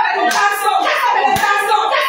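Several voices praying aloud at once over a woman during a deliverance session, with hand claps among them.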